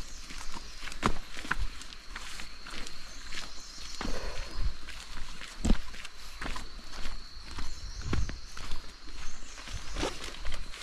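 Footsteps on a concrete forest path, landing irregularly about one to two a second, with a thin steady high-pitched tone behind them.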